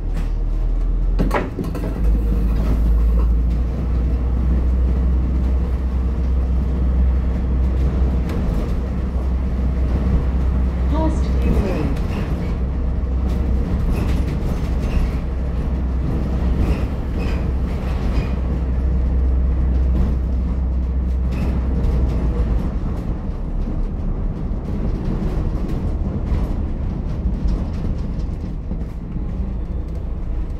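Inside an ADL Enviro400H MMC hybrid bus on the move: a steady, loud low rumble from its drivetrain, which drops away about three-quarters of the way through.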